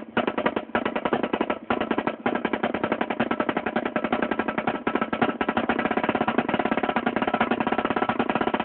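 Marching snare drum played solo with sticks: fast, dense strokes and rolls, with a few brief breaks in the first two seconds, then a steady unbroken stream of rapid strokes.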